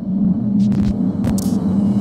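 Logo sting for a channel outro: a low, steady droning hum with short hissing swooshes laid over it, one just after half a second and another around a second and a half.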